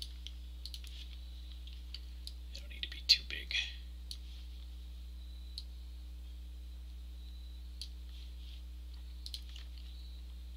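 Sparse, irregular computer mouse clicks, about ten of them, over a steady low hum. A brief vocal sound comes about three seconds in.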